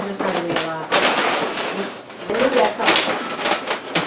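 Brown paper grocery bags rustling and crinkling as groceries are pulled out and set down on the counter, with several people talking over it.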